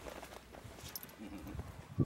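A pit bull-type dog moving about and jumping up against a person: faint paw scuffs and soft thumps, with a brief low vocal sound partway through.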